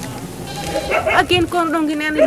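A woman speaking in a raised, emotional voice, drawn out on a long wavering note near the end.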